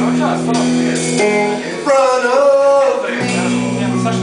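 Slow, soft song played live on electric guitar and bass guitar, with long held notes and a male voice singing a long wavering note in the middle. A deeper bass note comes in a little after three seconds.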